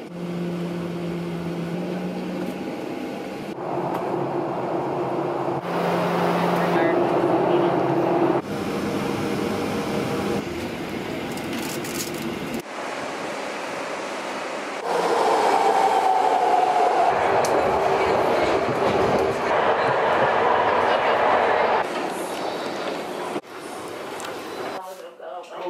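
A string of short travel clips cut together, each with vehicle running noise: a steady engine hum with held tones, then rail-train running noise with a slowly falling whine in one stretch. Faint voices can be heard in places.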